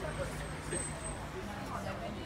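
Street ambience: indistinct voices in the background over a steady low hum like a vehicle engine.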